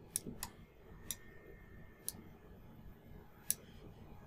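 Computer mouse clicking about five times, faint and irregularly spaced, with the strongest click about three and a half seconds in.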